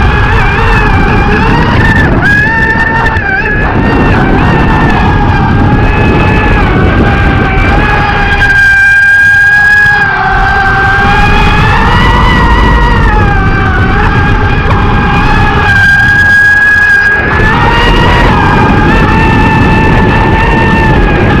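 RC speedboat running flat out, heard from on board: the drive's high whine wavers up and down in pitch over a loud rush of propeller spray and water on the hull. The water noise drops away briefly twice, around nine and sixteen seconds in, while the whine holds steady.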